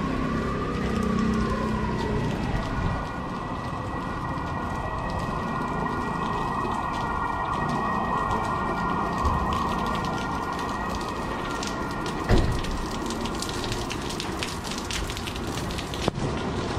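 Steady rain falling on a city street, with a faint steady high whine under it. A single sharp thump comes about twelve seconds in, and many quick ticks of close drops follow near the end.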